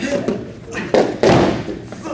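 A wrestler taken down onto the padded wrestling mat: a thump about a second in, then a short, loud rush of noise as the two bodies land and scuffle on the mat.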